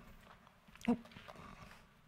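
A hushed pause: low room tone, with one brief faint sound about a second in.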